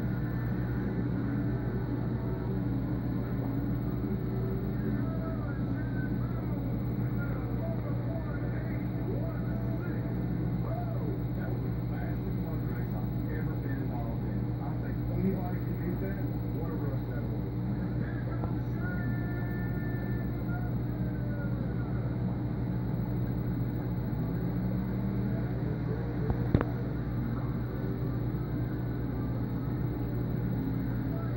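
Steady low hum of an aquarium air pump driving sponge filters, with faint voices in the background. A single sharp click about 26 seconds in.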